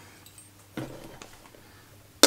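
Faint handling of a camping stove and cooking pot: a soft knock a little under a second in and a light click shortly after, over low room tone.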